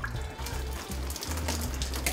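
Water pouring from a plastic bottle and splashing over a man's face, a continuous spattering, with background music underneath.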